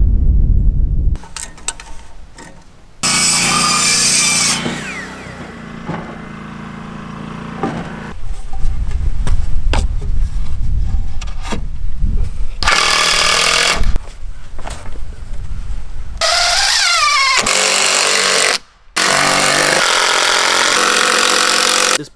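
Power tools working on framing lumber in several loud bursts of a few seconds each, with knocks between them. The first, about three seconds in, trails off with a falling whine like a saw spinning down; the rattling bouts near the end fit a driver sinking fasteners as a brace board is fixed between the girts.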